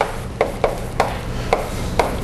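Chalk writing on a blackboard: a few sharp, irregular taps and short scrapes as symbols are written.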